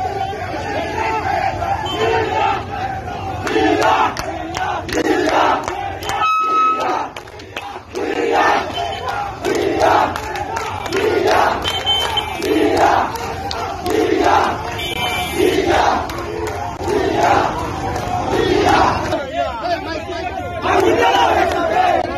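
A crowd of protest marchers chanting Bengali political slogans in unison, shouted calls repeating in a steady rhythm, with a short lull about six seconds in.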